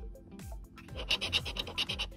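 Ring-shaped scratcher tool scraping the coating off a scratch-off lottery ticket in quick, repeated strokes, starting about half a second in.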